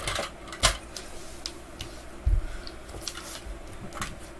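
Scattered light clicks and taps of a 1:24 scale diecast car being picked up off a wooden floor and handled, with a dull thump a little over two seconds in.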